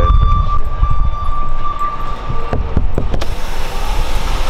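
Cargo van's engine running as the van is driven slowly, a low rumble heaviest in the first second. A steady high-pitched tone stops a little after two seconds in, and a few knocks follow near the end.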